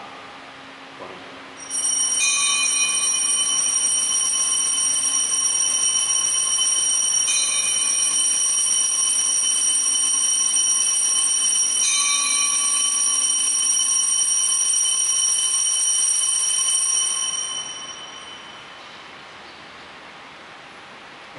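Altar bells rung for the elevation of the host at the consecration: a bright, sustained, many-toned ringing that starts about two seconds in, is struck up afresh twice at intervals of about five seconds, and fades out near the end.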